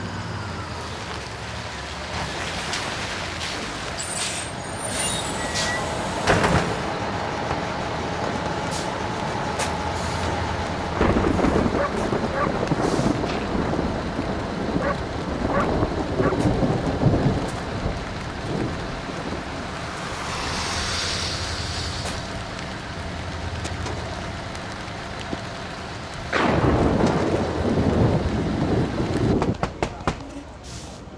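A tour bus's engine running as it pulls up, with a high brake squeal about four seconds in and a hiss of air brakes about twenty seconds in.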